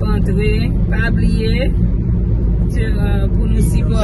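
Steady low rumble of a moving car heard inside the cabin: engine and road noise. Short snatches of a voice come over it a few times.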